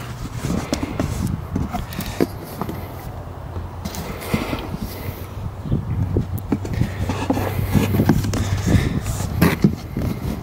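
Cardboard box being cut open with small shears and its flaps pulled back: scattered snips, scrapes and rustles of cardboard, over a steady low rumble of wind buffeting the microphone.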